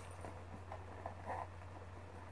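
Faint handling sounds of a bag's shoulder strap and its metal buckle being fitted, a couple of soft touches over a steady low hum.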